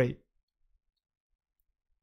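The end of a man's spoken word, then near silence: a pause in speech with no other sound.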